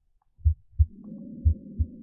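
Recorded normal heart sounds from an auscultation simulator: paired lub-dub beats (first and second heart sounds), about one pair a second, with a soft normal breath sound rising underneath from about a second in. The playback cuts out briefly at the start as the chest piece position changes.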